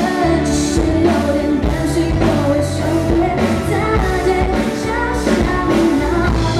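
A woman singing a Mandarin pop song live into a microphone, backed by a band with a drum kit keeping a steady beat.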